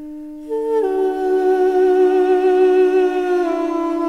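Armenian duduk playing a slow melody over a steady drone from a second duduk (the dam). The melody enters about half a second in with a short downward slide, holds, and steps down to a lower note near the end.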